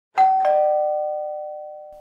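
A two-note doorbell-style 'ding-dong' chime: a higher note, then a lower one a quarter second later, both ringing on and slowly fading.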